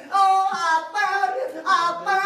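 Unaccompanied singing voices holding long, slow notes, with short breaks between phrases.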